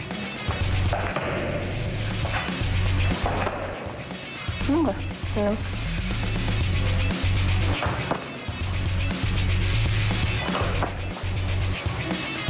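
Background music with a heavy low beat, over which come a few sharp slaps of kicks striking a hand-held taekwondo kick paddle.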